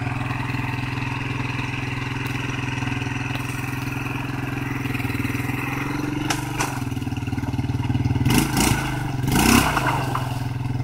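ATV engine running steadily while the quad sits hung up in mud, then revved in two short, louder surges near the end.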